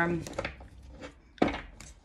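A single sharp tap on a hard table top about one and a half seconds in, with a few faint clicks before it, the kind made by handling cards on the table.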